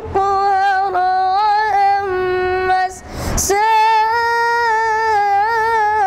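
A boy singing soz solo and unaccompanied in a high voice, holding long notes with small ornamental turns, with a quick breath about halfway through.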